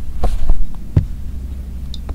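Three dull knocks as a heavy gold metal hand-shaped clip is set down on a cloth-covered desk, the last, about a second in, the loudest, over a steady low hum.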